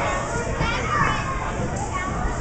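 Young children's voices, high shouts and chatter, over a steady background din of many children playing.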